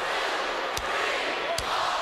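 Forearm blows landing on a wrestler's chest, three sharp hits about 0.8 s apart, over the noise of a large arena crowd counting along with the blows.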